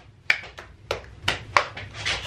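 About six sharp taps, roughly three a second, struck on the closed shell of a live giant scallop as it is worked on to get it open.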